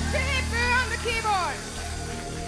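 Live funk band music: a sustained low chord and bass tone held underneath while a high, voice-like melodic line slides up and down in curving bends, dying away about a second and a half in.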